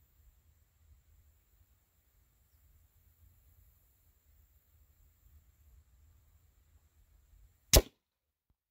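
Faint low wind rumble, then near the end a single loud, sharp crack of a .30 caliber air rifle shot striking a ballistic gel block faced with plywood.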